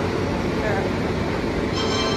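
An Indian Railways LHB train, ending in its luggage, brake and generator car, rolling slowly along a station platform: a steady rumble of wheels on the rails, with a thin, high squeal coming in near the end.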